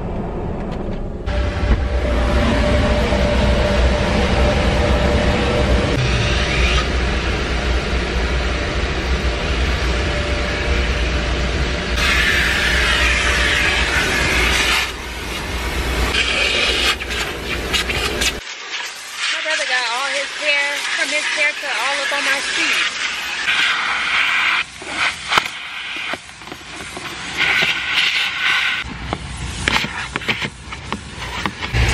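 Gas-station car vacuum running, its hose sucking air as the nozzle is worked over the car's interior and floor carpet, with a hiss that rises and falls as it moves. About 18 seconds in the deep rumble cuts off abruptly, leaving a lighter, uneven hiss.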